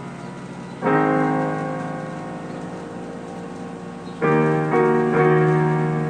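Digital keyboard played with a piano sound: a chord struck about a second in and left to ring down, then three chords in quick succession near the end, each fading slowly.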